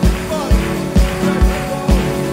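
A live worship band plays an upbeat song: a kick drum keeps a steady beat of about two hits a second under bass guitar and guitar chords.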